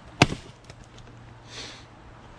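An axe striking a log and splitting it: one sharp crack just after the start, with a second smaller knock right behind it and a few light knocks after.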